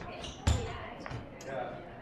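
Thuds from close-range sparring with wooden training daggers on a wooden floor: a heavy thud about half a second in, then a lighter knock, as feet stamp and bodies collide.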